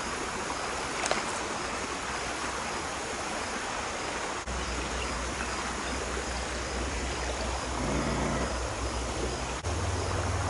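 Shallow creek riffle running steadily over stones. A single short click comes about a second in, and a low rumble joins the water sound about halfway through.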